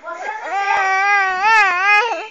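Infant crying: one long, high wail whose pitch wavers and rises briefly near the end.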